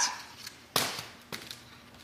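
A woven Easter basket knocked down onto a hardwood floor: one sharp knock a little under a second in, then a fainter tap.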